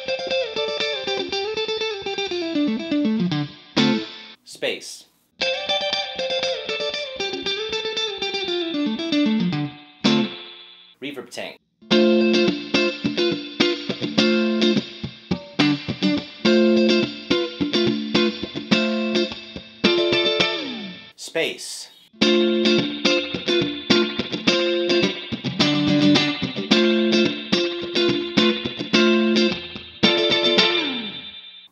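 Fender Stratocaster electric guitar played through spring reverb. A short single-note line that rises and falls is played twice, then a rhythmic chord riff is played twice, with short breaks between.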